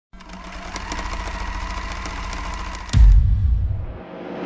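Electronic sound effects of a record-label video ident: a fast mechanical-like rattling and clicking over a steady high hum and low rumble. About three seconds in comes a deep, loud boom that then fades.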